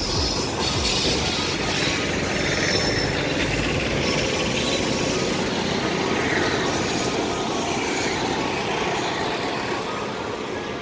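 A passenger train hauled by an Indian Railways electric locomotive rolls past with a steady rumble of wheels on rail. Thin, high wheel squeal comes in near the start and again a few seconds in.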